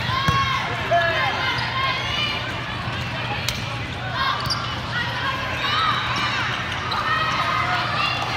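Indoor volleyball rally: players' court shoes squeak on the floor and the ball is struck a couple of times with sharp smacks, over a steady background of voices in the hall.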